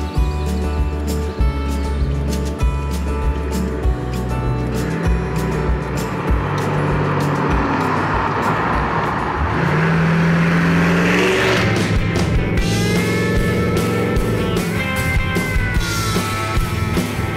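Background music with a steady beat, over which a 1969 Ford F100 with a supercharged V8 drives past: its engine and tyre noise swell gradually to a peak about ten seconds in, then cut off suddenly.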